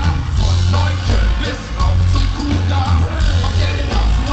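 Live band music played loud through a concert PA, with a marching drumline on snare drums over a heavy, pulsing bass.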